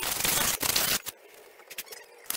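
Rustling and scraping from hands and a sleeve working close to the microphone, loud for the first second and then quieter, with a few small clicks.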